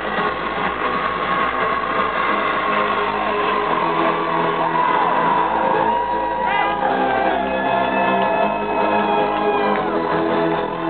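Loud live electro-industrial music played over a concert PA. In the second half a long high tone is held, steps up in pitch about two-thirds of the way through, and cuts off near the end.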